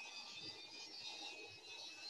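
Faint steady background noise with a few thin high-pitched tones: machinery running in the background.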